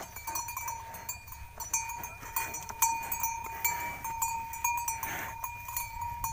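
A yoked pair of water buffaloes hauling a straw-laden cart through mud, with a steady high ringing and frequent light clinks from the team and its cart.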